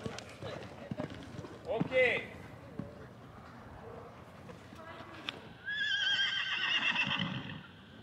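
A horse whinnies once, a quavering call about two seconds long in the second half, over the soft thuds of hooves cantering on sand.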